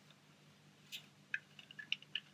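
Faint clicks from the plastic rear head-adjuster screw of an Optivisor magnifier headband being turned by hand: a few small ticks in the second half.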